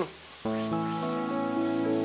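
Background score music: held synth chords that come in about half a second in and change slowly, after a brief soft hiss.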